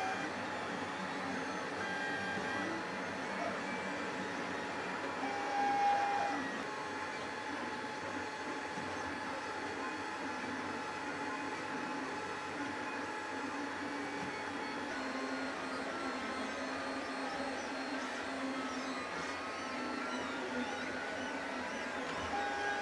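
LulzBot FDM 3D printer printing PLA parts: its stepper motors whine in shifting tones as the print head moves, over the steady hum of its cooling fans.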